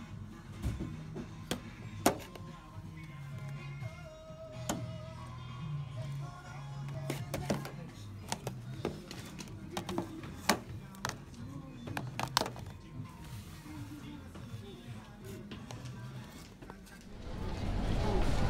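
Shop background music playing at low level, with sharp clicks and taps of plastic Blu-ray cases being handled on the shelf. Near the end, louder street noise takes over.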